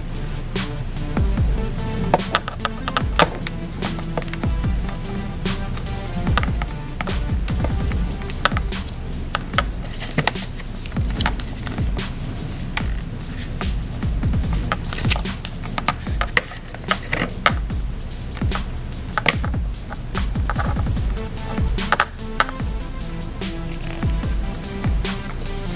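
Background electronic music with a steady beat and bass line.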